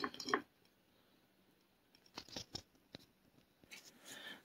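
A few short, faint scratches and clicks about halfway through, from hands handling small terracotta pots and potting soil.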